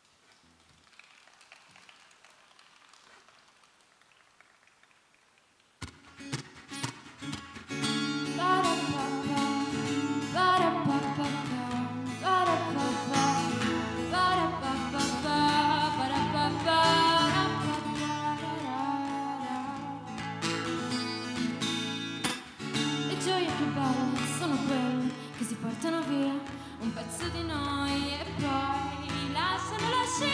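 Near silence for about six seconds, then a solo acoustic guitar starts playing and a woman's voice begins singing over it about two seconds later.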